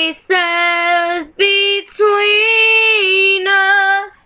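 A girl singing solo and unaccompanied, a phrase of several sung notes with short breaks between them; the longest note is held for more than a second past the middle.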